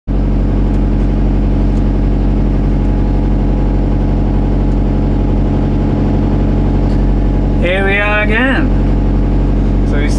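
Diesel excavator engine idling close by, running steadily at an even pitch with no revving.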